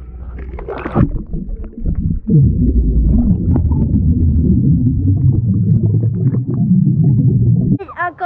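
A splash about a second in as a GoPro goes under a swimming pool's water, then the loud, muffled underwater rumbling and bubbling picked up through the camera's housing, with muffled wavering voice-like sounds; it cuts off suddenly near the end.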